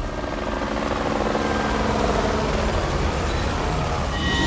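Cinematic underscore: a deep, steady rumbling drone with several sustained held tones above it, swelling slightly in loudness.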